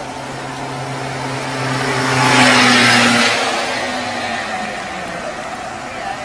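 A motor vehicle driving past. The engine hum and tyre hiss build to a peak about halfway through, then fade away.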